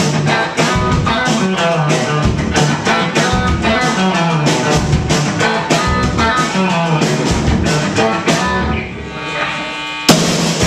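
Punk band playing live: distorted electric guitar, bass guitar and a drum kit with a fast, steady beat. Near the end the drums and cymbals drop away for about a second, leaving the guitars ringing, before the full band comes back in.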